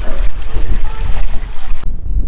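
Wind buffeting the camera microphone: a loud, gusty low rumble with a hiss over it and voices faintly underneath. It cuts off abruptly just before the end.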